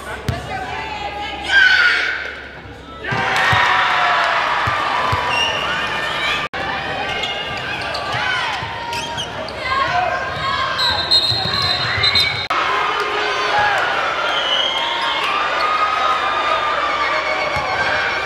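A basketball bouncing on a hardwood gym floor now and then, under crowd and player voices and shouting that echo in a large gymnasium. The loudest moment is a shout about a second and a half in.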